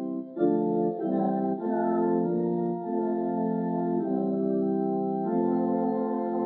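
Church organ playing slow, held chords that change every second or so, with no singing.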